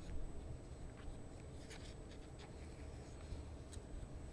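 Faint scattered clicks and taps, four or five in all, over a low steady hum.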